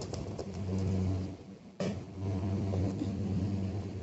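Tarot cards being shuffled and handled, soft card slides and light flicks, over a steady low hum that dips briefly and comes back abruptly a little before two seconds in.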